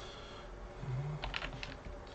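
Typing on a computer keyboard: a quick cluster of keystrokes a little past the middle, over a quiet background.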